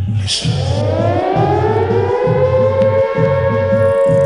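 Club dance music from a DJ megamix: a steady pounding bass beat, over which a siren-like sweep rises in pitch from the start and levels off into a held tone near the end.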